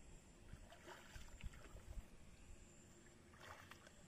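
Faint water splashing and sloshing in two short spells, about a second in and again near the end, as a person wading waist-deep moves through a river and handles a fishing net.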